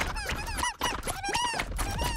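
A rapid string of short, high-pitched squeaky yips from a tiny cartoon slime puppy, each call rising and falling in pitch, over a low rumble.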